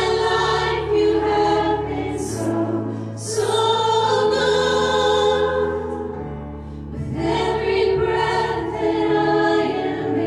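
Live church worship band playing a song: several voices singing together in long held phrases over acoustic guitar and steady low accompaniment, with a brief breath between phrases a little past halfway.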